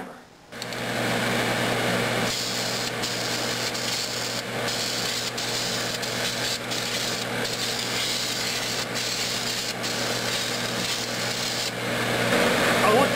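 Aerosol can of enamel primer spraying, a steady hiss with a few brief breaks as the nozzle is let off, over a steady low hum from the spray hood's exhaust fan.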